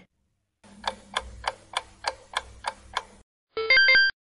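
Clock-ticking countdown sound effect, about three ticks a second for roughly two and a half seconds. Near the end comes a short, bright chime of a few notes, a quiz 'correct answer' cue.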